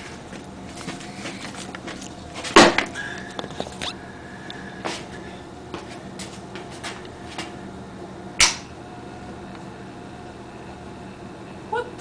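Refrigerator ice maker module's small gear motor humming steadily while overvolted on 240 volts, still turning very slowly, with a few faint clicks. Two sharp knocks stand out, about two and a half seconds in and again about eight and a half seconds in.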